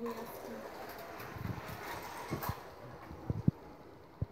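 Muffled rustling and handling noise, with a few soft low thumps near the end, the loudest about three and a half seconds in.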